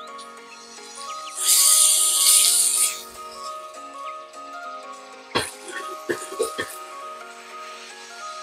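Raw chicken thigh laid into hot oil in a frying pan, sizzling loudly for about a second and a half. Then a sharp knock and a few quick clicks, over background music.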